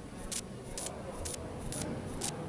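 Indistinct murmur of a crowd of people milling about, with short hissy ticks repeating evenly about twice a second over it.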